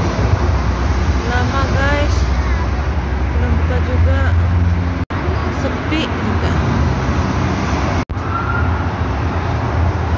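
Steady low rumble of road traffic, with faint voices in the background. The sound cuts out briefly twice, about five and eight seconds in.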